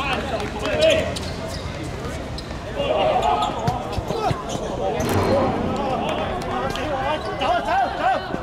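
Players shouting to each other during a small-sided football game, with the sharp knocks of the ball being kicked and bouncing on the pitch.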